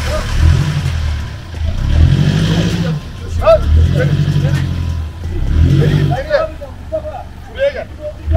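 Off-road 4x4's engine revved in repeated surges of about a second each, rising and falling four or five times, as a driver works the throttle to get through deep mud. Men shout near the end.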